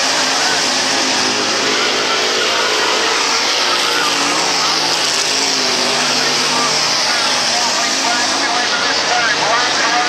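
A field of dirt-track Pro Stock race cars with V8 engines running hard as they race around the dirt oval. The engine pitch rises and falls as the cars pass and lift for the turns.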